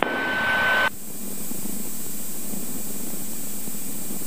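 A brief radio hiss with a steady whistle-like tone cuts off about a second in, followed by the steady cabin noise of a Cirrus SR22 taxiing in rain: engine and propeller running at low taxi power.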